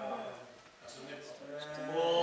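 Men's voices in a council chamber with long, drawn-out vowels, as in calling out during a recorded roll-call vote; two spoken stretches with a short dip between them.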